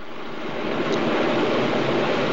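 A steady rushing noise, like static or a whoosh, that swells in over the first half-second and then holds even.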